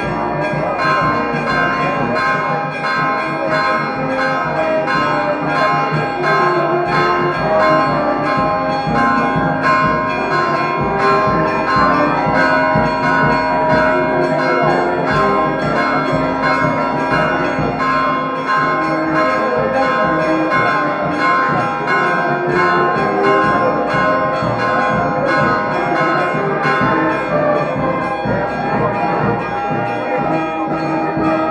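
Church bells ringing a continuous festive peal, with rapid, even strokes and many overlapping tones ringing on.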